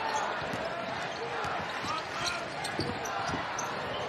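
Basketball being dribbled on a hardwood court, a few irregular bounces over the steady murmur of the arena crowd.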